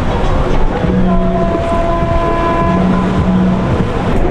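Motorboat engines running with a dense, steady rumble, joined about a second in by held steady tones for roughly two and a half seconds.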